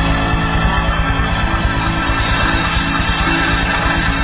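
A rock band playing loudly live, an instrumental stretch of guitars and drums without singing.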